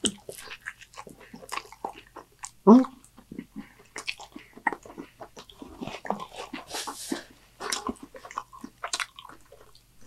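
Close-miked biting and chewing of a taco dipped in cheese sauce: many small wet mouth clicks and smacks. A short grunt comes about three seconds in, and a brief hiss just before seven seconds.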